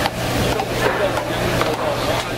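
Swordfish fish-cake strips deep-frying in a wide pan of hot oil, a steady sizzle, over background voices and a constant low hum.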